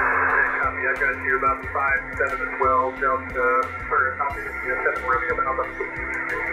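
Single-sideband voice reception on 10 metres through an HF ham transceiver's speaker. It opens with about half a second of receiver hiss, then a thin, band-limited voice from the distant station. A steady low hum tone sits underneath.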